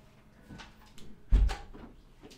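A door being shut: a couple of light knocks, then one heavy thud as it closes, about a second and a half in.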